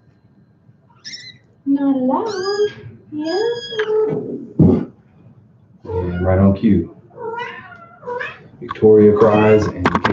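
A cat meowing several times: two long meows that bend in pitch a couple of seconds in, then a run of shorter calls.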